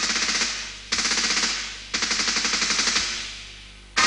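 Automatic gunfire: three bursts of rapid shots about a second apart. Each burst starts sharply and dies away, the last trailing off over about two seconds.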